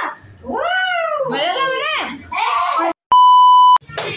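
A girl's high voice making drawn-out sounds that rise and fall, without clear words. About three seconds in, after a brief silence, a loud, steady electronic beep lasting under a second cuts in, the loudest thing here; it is an edited-in beep tone.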